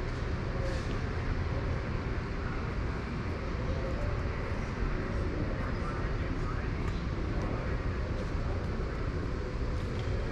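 Steady low rumble of a large museum hangar's room tone, with faint, indistinct voices in the background.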